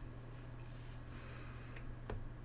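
Quiet room tone with a steady low hum, broken by a couple of faint short clicks about a second in and near the end.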